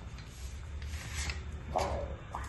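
Rustling and rubbing of a chocolate bar's wrapper and gold foil as it is handled and opened, with a short louder rustle near the end.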